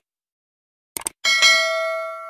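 Sound effects for a subscribe-button animation: a quick double mouse click about a second in, then a bright notification-bell ding that keeps ringing and slowly fades.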